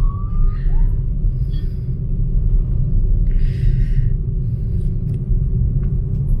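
Steady low rumble of a car's engine and tyres on the road, heard from inside the cabin while driving. A brief hiss comes about three and a half seconds in.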